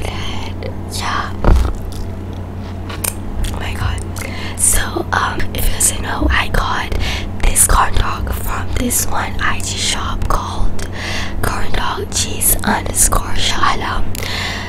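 A girl whispering close to a microphone, with a steady low hum underneath.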